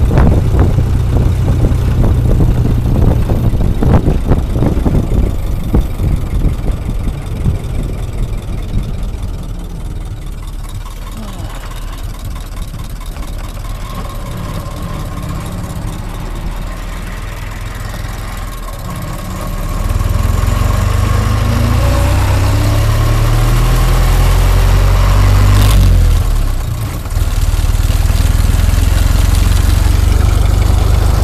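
Ford Model T under way, its four-cylinder engine running with a heavy wind rumble on the microphone. The sound grows louder about two-thirds of the way in as the car picks up speed.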